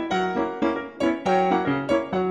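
Piano music: a rhythmic tune of struck chords over a moving bass line, the notes changing a few times a second.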